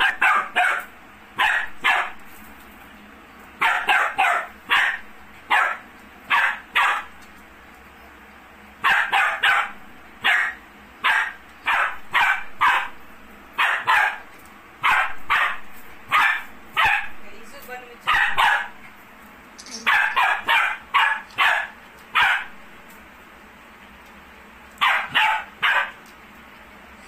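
Dog barking repeatedly in quick runs of one to three sharp barks, with short pauses between runs.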